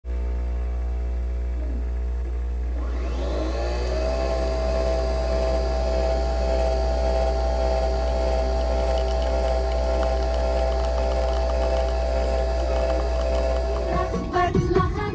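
Coffee machine brewing into a mug: a steady hum whose pitch rises about three seconds in, then holds as a steady whine while the coffee pours.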